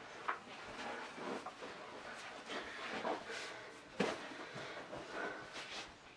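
Faint rustling and soft knocks of a fabric tug pillow being picked up and handled, with a sharper knock about four seconds in.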